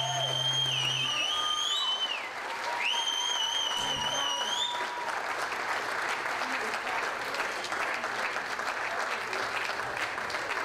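Audience applauding after a live band song, with two long, high whistles over the clapping in the first half, each rising in pitch at its end. The clapping carries on alone after that.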